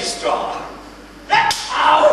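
A single sharp crack about one and a half seconds in, set among voices.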